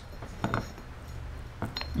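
Two light metallic clinks, about half a second in and near the end, as a steel axle shaft is fitted down through the welded differential gears of a Wheel Horse cast-iron transaxle, a test fit to check that the gears still line up after welding.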